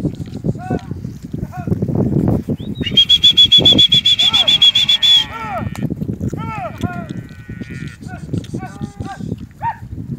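Brangus cows and calves moving through a pasture, with repeated short calls throughout and a low steady rustle. About three seconds in, a two-second run of rapid high-pitched calls is the loudest thing.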